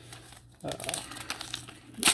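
Paper envelope crinkling and rustling in the hands as it is opened and a taped card is slid out, a run of short crackles from about half a second in that ends in a louder crinkle.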